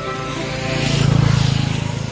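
A motor vehicle engine passing close, growing louder to a peak about a second in and then fading, with background music underneath.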